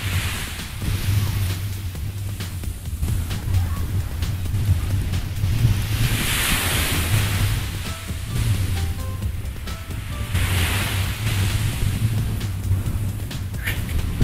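Background music over surf washing onto a sandy beach, the waves swelling twice, about six and ten seconds in, with wind rumbling on the microphone.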